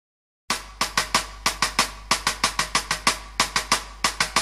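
A snare drum playing a quick rhythm on its own as the intro of a rock song, starting about half a second in after silence.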